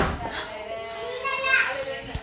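Children's voices in a crowded hall, with one child's high-pitched call rising and falling about a second and a half in over general chatter.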